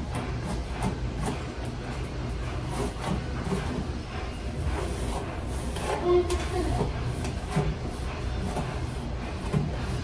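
A hairbrush dragged again and again through long, tangled hair, giving short scratchy strokes over a steady low hum.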